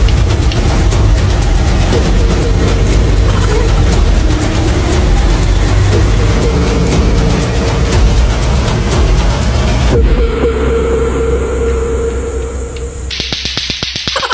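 Background music with rapid clacking of lato-lato clacker balls, two hard plastic balls on a string knocking together. The mix changes about ten seconds in.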